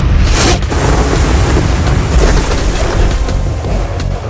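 Cartoon action sound effects: a loud, continuous rushing noise over a deep rumble, with brief surges about a third of a second in and again around two seconds in, mixed with background music.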